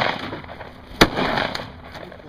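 A single shotgun blast about a second in, its report rolling away in a long echo. Before it, the echo of an earlier shot is still fading.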